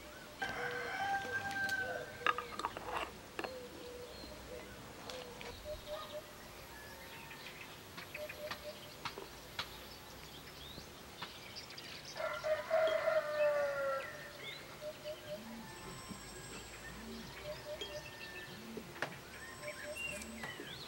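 A rooster crowing twice, about half a second in and again about twelve seconds in, the second crow falling in pitch at its end. Short clucks and a few faint clicks come in between.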